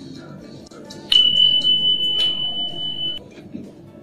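A single steady, high-pitched electronic beep that starts sharply about a second in and holds for about two seconds before cutting off. Faint crackles of fingers handling lettuce and rice vermicelli run underneath.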